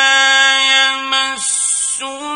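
A male Quran reciter in the melodic mujawwad style holds one long, steady note, which drops in pitch and breaks off about one and a half seconds in. A short hiss follows just before the end.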